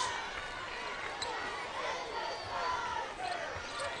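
Live basketball court sound: a basketball being dribbled on a hardwood floor over a murmuring arena crowd, with short sliding squeaks scattered through it.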